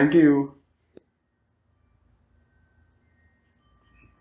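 A man's voice briefly at the start, then a single sharp click about a second in, followed by a quiet room with a faint low hum and faint thin steady tones near the end.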